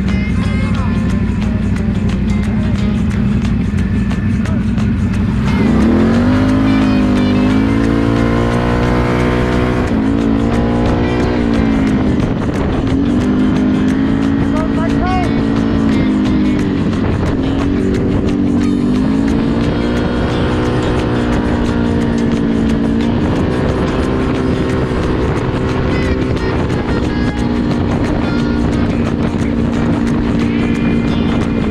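Can-Am Renegade XMR 1000R ATV's V-twin engine idling, then pulling away about five seconds in. The revs then rise and fall repeatedly with the throttle as it accelerates along the road.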